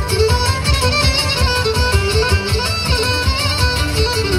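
Live Cretan folk dance music played over a PA: a bowed Cretan lyra carries a quick, ornamented melody over strummed laouta and a steady low beat.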